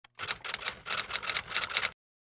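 Typewriter sound effect: a quick run of about a dozen keystroke clacks, about six a second, stopping abruptly just before the end.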